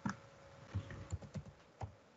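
Computer keyboard keys tapped several times in quick, separate clicks, typing a short command.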